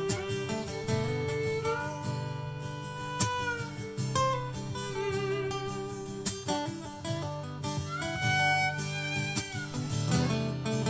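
Live instrumental music: a violin plays long held notes with slight vibrato and slides between them over steadily strummed guitars.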